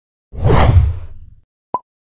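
Logo-ident sound effect: a loud whoosh with a deep rumble that swells in and fades away over about a second, followed by a single short, sharp ping.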